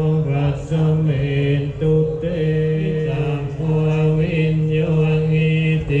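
Group of Thai Buddhist monks chanting Pali verses in unison, held on a nearly steady low pitch with brief breaks between phrases.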